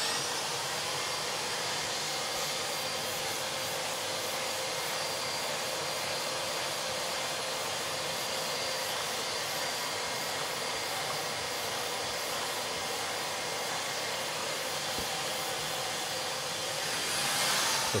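Dust-extraction vacuum running steadily, drawing air through a hand sanding block with a mesh abrasive as primer is block-sanded: an even, constant rushing sound.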